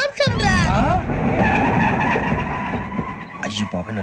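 Loud steady rumble of a moving train on the tracks, with a thin steady whine above it. It swells in about a third of a second in and fades a little after three seconds.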